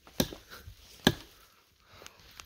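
An axe chopping into a small tree trunk, cutting a blaze through the bark, with two sharp strikes, the louder one about a second in.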